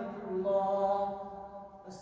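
A man's voice chanting Quran recitation (tilawah) over a mosque microphone, holding a long melodic note that fades out about a second and a half in, followed by a brief pause for breath near the end.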